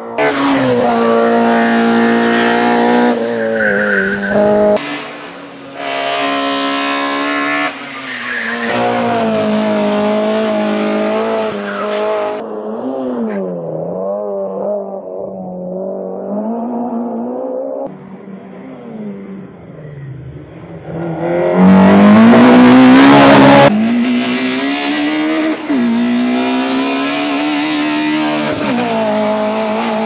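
Race car engine at high revs, rising in pitch through each gear and dropping at the shifts and under braking. It is heard as a string of separate passes that change suddenly from one to the next, with the loudest and closest pass about 22 seconds in.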